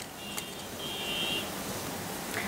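Two faint, brief high electronic beeps, the second one longer, over steady background hiss.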